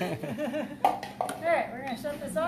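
Voices talking in the room, with a few sharp knocks about a second in, the first the loudest, from a wooden spoon stirring in a stainless steel pot.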